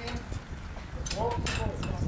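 Voices of a work crew calling out briefly about a second in, over a continuous low rumble, with a few sharp clicks near the voices.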